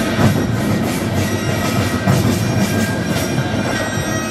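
A large Korean traditional percussion troupe (pungmul) playing in unison: many drums beaten together under a dense metallic clatter and ringing.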